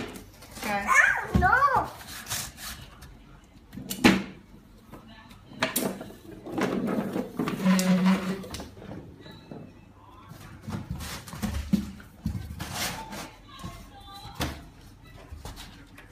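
Scattered knocks and scuffs of large cardboard boxes and a plastic ride-on toy being moved about, with a young child's brief vocalising early on.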